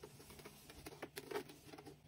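Kitchen knife cutting through layered raw pastry dough in a metal baking tray: a run of faint, short taps and scrapes, mostly in the second half.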